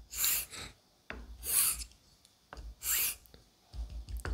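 A Japanese straight razor, spine taped, is drawn in X strokes across an Atoma 600 diamond plate while its bevel is being set: three scraping strokes about a second and a half apart, with a couple of shorter scrapes near the end.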